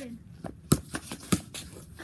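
A basketball dribbled on a concrete patio: a handful of sharp bounces, the two loudest about half a second apart.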